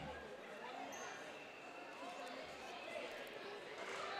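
Basketball bouncing on a hardwood gym floor, soft and faint, as a player dribbles at the free-throw line before shooting. A low murmur of spectators' voices fills the hall.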